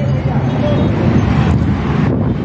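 Busy street traffic noise with wind buffeting the microphone and some voices in the background.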